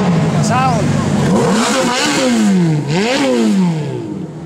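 Ferrari F430's V8 engine revved in repeated throttle blips, about three times. Each time the pitch rises quickly and then falls back.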